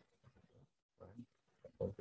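A quiet pause in speech: faint room tone with one brief soft sound about a second in, then a person's voice starting again near the end.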